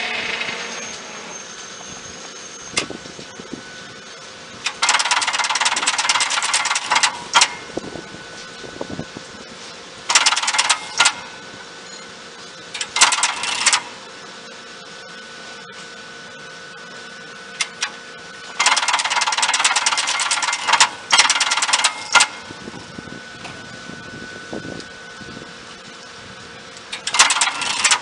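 Underfloor control gear of an Ichibata 3000 series electric train operating, its contactors and switches clattering in about five bursts of rapid clicking, each one to three seconds long, with a few single clicks between. A steady hum runs underneath.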